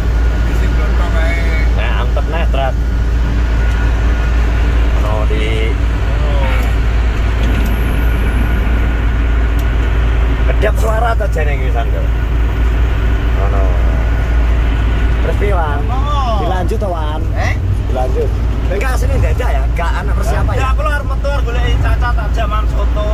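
Steady low rumble of engine and road noise inside a car's cabin at highway speed, with bursts of talk at several points.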